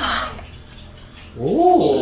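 A person's drawn-out startled 'oh', rising and then falling in pitch, starting about one and a half seconds in, after a short breathy sound at the very start.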